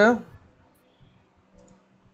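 A spoken reply ends just after the start, then near-quiet with a faint steady low hum and a few faint clicks about a second in and again past halfway.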